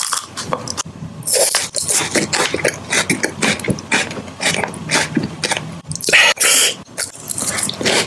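Close-miked mouth sounds of crunching and chewing a KitKat wafer bar: irregular crisp crunches with wet mouth noises, two louder crunches about a second and a half in and about six seconds in.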